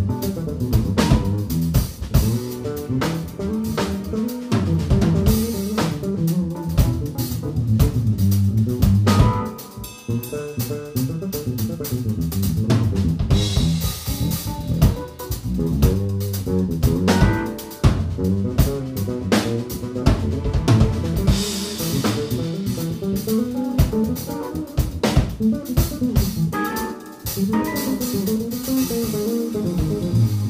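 Jazz-rock fusion band playing live: drum kit with a busy, moving bass line.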